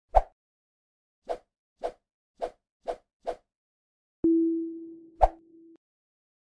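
Title-animation sound effects: one sharp pop, then five softer pops about half a second apart. Then a steady low tone sets in and fades over about a second and a half, with another sharp pop about a second after it begins.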